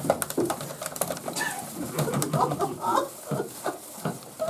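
Low, muffled voices murmuring under their breath, with scattered clicks as the keys of a push-button desk phone are pressed.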